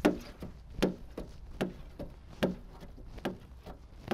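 Hand squeegee strokes on wet window-tint film over car rear glass, a short sharp swipe about every 0.8 seconds.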